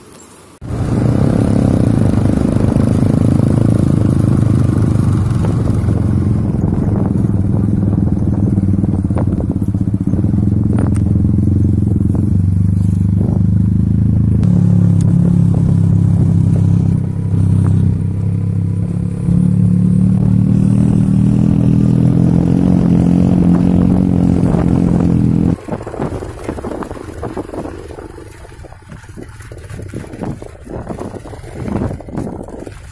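Motorcycle engine running under way, heard close up, its pitch stepping up and down several times as the speed changes. It cuts off suddenly about 25 seconds in, leaving quieter outdoor noise.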